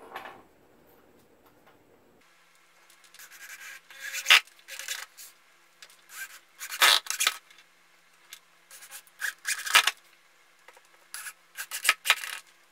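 Corded electric drill driving screws through a metal lathe faceplate into a log, in about four rough bursts a couple of seconds apart, each lasting a second or so.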